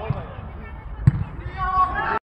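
A football being kicked: a sharp thud about a second in, the loudest sound, with a fainter kick at the very start. Players shout on the pitch, loudest near the end.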